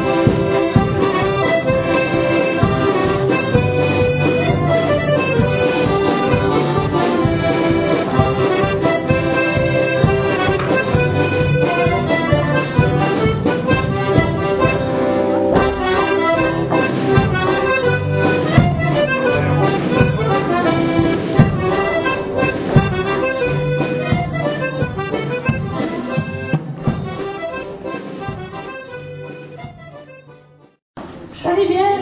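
Accordion-led traditional folk dance music playing, with sustained low bass notes under the tune and sharp percussive clicks throughout. The music fades out over the last few seconds as the dance ends.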